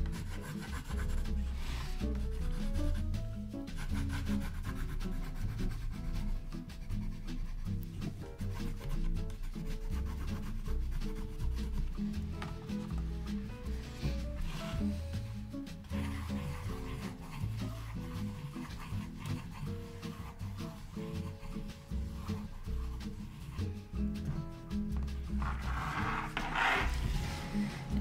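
A Koh-i-Noor Progresso woodless coloured pencil scribbling on sketchbook paper in quick, continuous rubbing strokes. Quiet background music runs underneath, and a louder paper rustle comes near the end.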